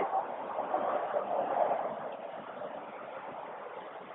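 Quiet, steady outdoor background noise, a little stronger in the first second or two and fading toward the end.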